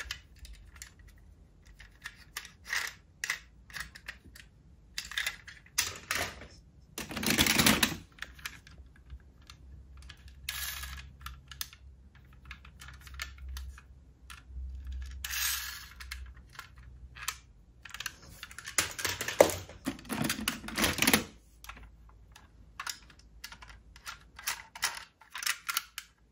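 Die-cast metal toy cars being handled over a plastic box of other toy cars: scattered light clicks and taps, with a few longer clattering rattles, the loudest about seven to eight seconds in.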